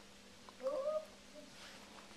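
A single short pitched call about half a second in, lasting about half a second and higher than the nearby speaking voice.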